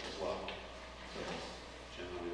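A man's voice speaking briefly in a meeting room, then pausing, with faint handling noises.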